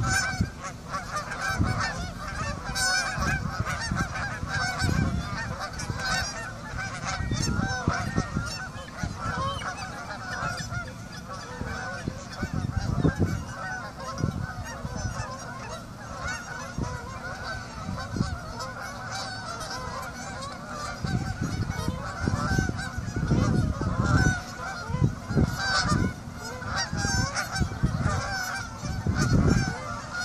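A large flock of geese honking, many calls overlapping in a continuous chorus.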